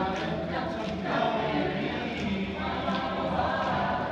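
A choir singing together, several voices in sustained sung phrases.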